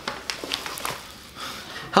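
Sheets of paper rustling and crinkling as a folded letter is opened and handled, in short faint scrapes during the first second, then quieter.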